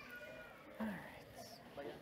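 Faint voices of people in a hall, with a brief louder, higher-pitched vocal sound about halfway through.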